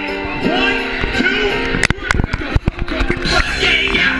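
Live hip-hop concert music over the PA, heard from within the crowd, with a male voice rapping over the track. About two seconds in, a short cluster of sharp cracks with brief drops in level breaks into the music.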